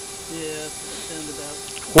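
Faint, distant voice of a man talking under a steady hiss.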